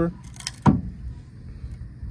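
Hands working a bat compression tester clamped on a wrapped softball bat: a brief high rustle, then a single sharp knock, then faint background.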